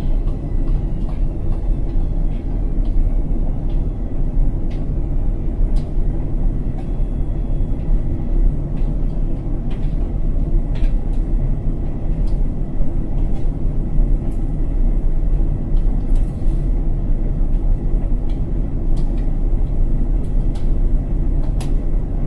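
Indesit front-loading washing machine running its spin after the first rinse: a steady motor and drum rumble with scattered light clicks.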